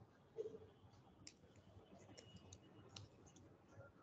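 Faint computer mouse clicks, a few scattered ones, over near-silent room tone.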